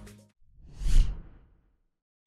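A single whoosh transition sound effect: a rush of noise that swells to a peak with a low thud about halfway through, then fades away, with silence on either side.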